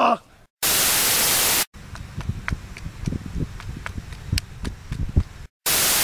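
Two bursts of TV-static white noise, each about a second long, cutting in and out abruptly: a static-screen transition between clips. Between the bursts come scattered low thumps and clicks.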